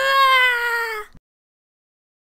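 A high, drawn-out crying wail from a voice actor, held on one long note that slowly sags in pitch and cuts off about a second in.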